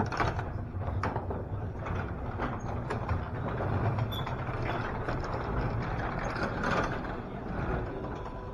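Performax overhead garage door opener running and lowering a sectional steel garage door: a steady low motor hum, with the door's rollers clicking and rattling along the tracks.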